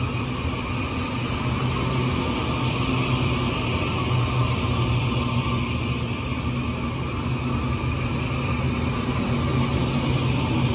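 Taiwan Railway EMU800 electric multiple unit departing, rolling slowly past with a steady hum of motors and wheels that grows slightly louder.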